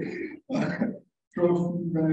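A man's voice at a podium microphone in short broken bursts of speech-like sound that carry no clear words.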